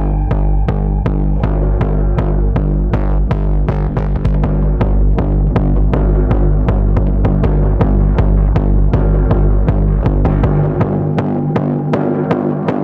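Live electronic techno: a steady beat of sharp percussive hits, about four a second, over a sustained low bass drone. The deepest bass drops out about a second before the end while the hits continue.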